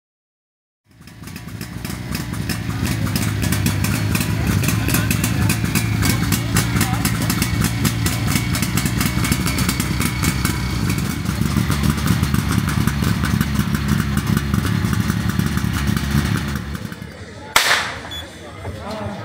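Portable fire pump engine running hard and steady, coming in about a second in and building over the next two seconds. A sharp crack near the end.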